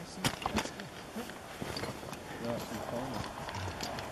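Faint voices of people talking quietly, with a few short clicks in the first second.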